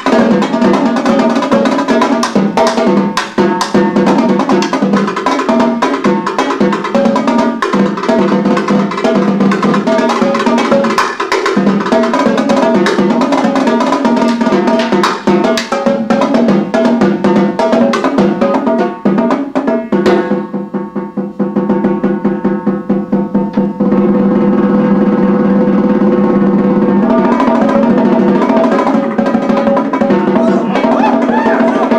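Marching tenor drums (quads) played solo with mallets: fast runs of strokes around the drums, a quieter passage of rapid notes about two-thirds through, then sustained rolls near the end.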